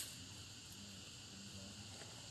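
Steady, faint high-pitched chorus of insects. A single sharp click right at the start.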